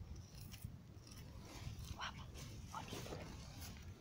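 Faint, scattered small clicks and rustles of a cat biting and pawing at a plastic ballpoint pen on a cloth, over a low steady rumble.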